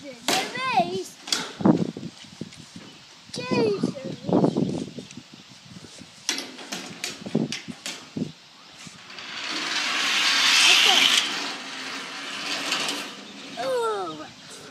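Die-cast toy cars running down a metal multi-lane race track, heard as one noisy rolling swell that builds and fades about 9 to 12 seconds in, with a few short clicks of cars being handled on the track before it. A child's voice makes sing-song sounds at the start and again near the end.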